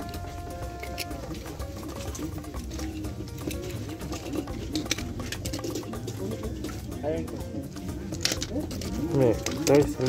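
Busy market background of people talking and music playing, with light clicks and clatter of plastic toy cars being picked through in a heap. A nearer voice comes in just before the end.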